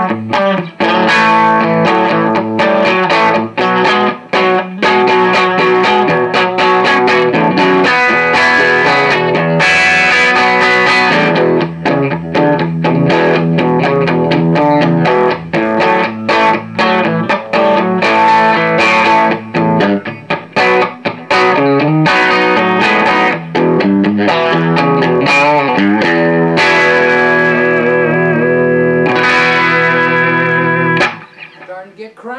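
Fender electric guitar played through a Gemtone ON-X8, an 8-watt EL84 valve amp, with the master turned down and the gain raised for Plexi-style crunch: chords and picked lines with a light overdrive.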